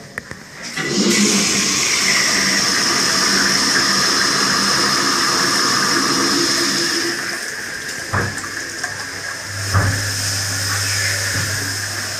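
Presto sensor flushometer flushing a Duravit wall-hung toilet bowl. A rush of pressurised water starts about a second in, stays loud for about six seconds, then eases to a quieter flow. Near the end there are two knocks, followed by a low steady hum.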